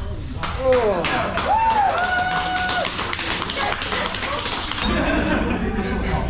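A TASER cycling through its discharge: a rapid, dense run of clicks lasting about five seconds, with the tased person's strained yells and groans over it. The clicking cuts off near the end, and voices carry on.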